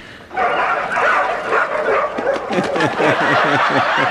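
Several puppies yapping and barking together, starting suddenly about a third of a second in, with a man chuckling over them near the end.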